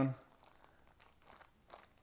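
Clear plastic wrapper crinkling faintly as it is handled, in scattered short crackles.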